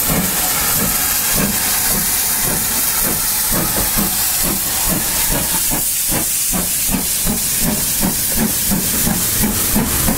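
GWR Large Prairie 2-6-2 tank steam locomotive moving off past close by: a steady hiss of steam with a regular beat of about three a second.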